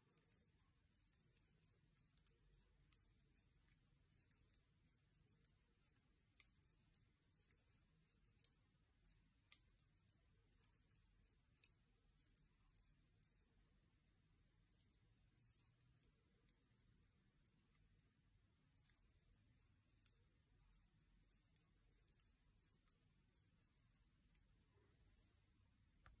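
Near silence with faint, light clicks of wooden double-pointed knitting needles touching, irregular, about one every second or two, as stitches are worked around a sock cuff in knit-one-purl-one rib.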